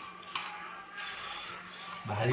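Faint sounds of fingers mixing rice and curry on a steel plate, with one sharp click about a third of a second in, over a steady low hum.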